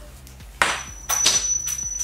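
Small metal cleaning-rod parts handled in gloved hands: a run of short scraping strokes starting about half a second in, with a thin high ringing ping held for over a second, as the fitting is taken off the end of the cleaning rod.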